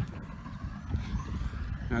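Uneven low wind rumble on the microphone, with the faint engine note of a distant vehicle rising steadily in pitch over the second half.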